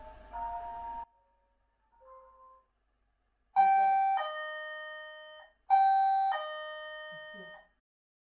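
A music box's tinkling melody cuts off about a second in. Then a motion sensor's alert chime sounds twice, each a two-note ding-dong, a higher note then a lower one, ringing out and fading over about two seconds: the sensor has been triggered.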